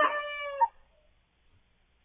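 A young cockerel crowing: the last part of one high-pitched crow, which cuts off about two-thirds of a second in.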